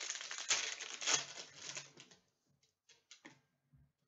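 Foil trading-card pack wrapper crinkling as it is torn open for about two seconds, followed by a few light clicks as the cards are handled.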